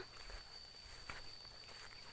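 Faint footsteps through grass and low leafy undergrowth, soft scattered steps with some rustling, and a steady thin high tone underneath.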